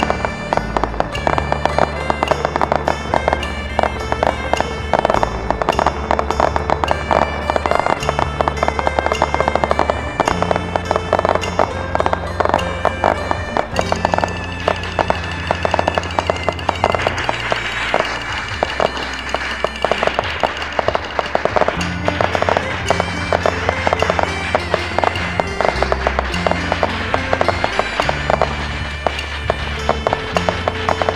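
Aerial fireworks bursting and crackling in a dense, rapid run of pops, over music with a deep bass line that changes note every second or two.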